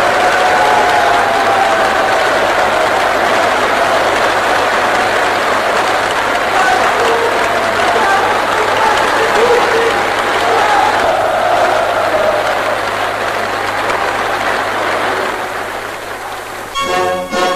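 A large audience applauding steadily, with voices calling out over the clapping, on an old newsreel soundtrack. The applause eases off slightly near the end.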